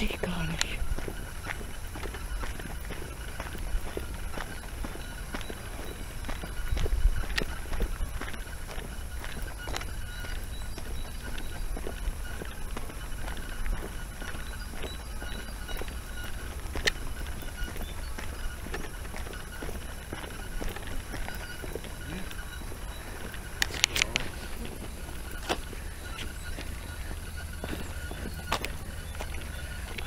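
Low rumble of wind and handling on a camcorder microphone while walking, with footsteps and scattered clicks; the loudest cluster of clicks comes about 24 seconds in.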